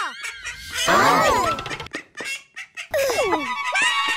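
Cartoon mother duck's loud, angry quack about a second in, followed near the end by a character's startled, falling cry.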